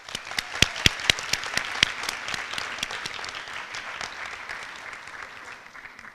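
Audience applauding, with a few sharp, loud claps in the first two seconds; the applause thins out and dies away near the end.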